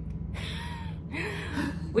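A woman's breathy gasps: two breathy sounds, the second partly voiced like a stifled laugh, over a steady low hum.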